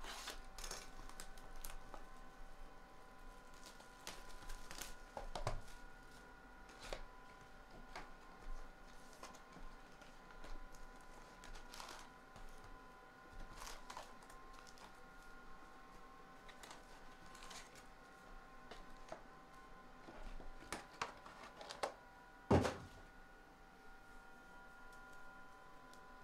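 Topps Archives baseball hobby box and its foil packs being handled: scattered crinkles, rustles and light taps as packs are pulled out and stacked, with a louder thump near the end as a stack is set down on the table. A faint steady whine sits underneath.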